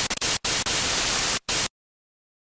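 TV-static sound effect: a loud, even hiss of white noise that stutters, drops out briefly twice, and cuts off suddenly to silence about a second and a half in.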